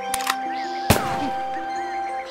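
Light cartoon background music with held notes, and one sharp gunshot sound effect about a second in, the loudest moment, with a fainter click near the start.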